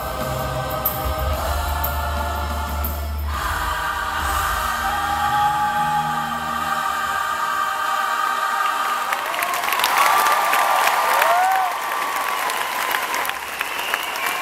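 A large choir and band hold the song's final chord, which dies away a little over halfway through. The audience then breaks into applause and cheering, with a few shrill whoops.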